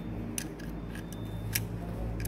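A spanner clicking against the small bolts of a Wabco clutch booster's valve cover as they are turned: a couple of short, sharp metallic clicks over a steady low hum.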